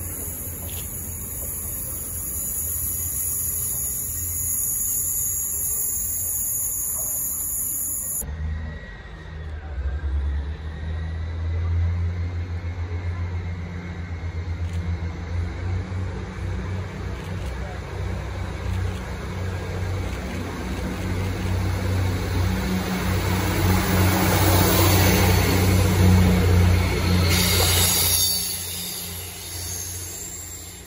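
GWR Class 158 diesel multiple unit approaching and passing close by, its diesel engines giving a deep pulsing rumble that grows louder to a peak near the end, then falls away suddenly. Before it, a steady high hiss cuts off abruptly about eight seconds in.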